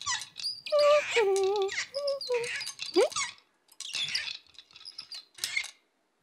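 Squeaky cartoon sound effects: a few short held squeaky tones stepping down in pitch, then a quick rising squeak about three seconds in, followed by fainter thin high squeaks.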